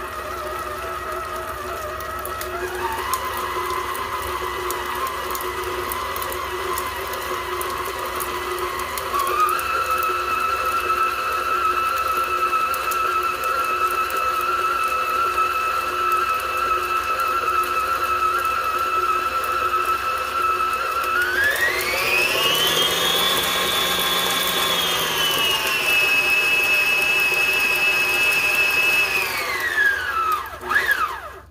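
Farberware six-speed stand mixer running, its flat beater churning ground beef and sausage for meatloaf, with a steady motor whine. The pitch steps up twice, glides higher about three quarters of the way through, drops back a step, then winds down as the mixer stops at the very end.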